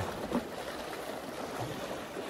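Small sea waves washing and splashing against shoreline rocks, a steady even rush of water.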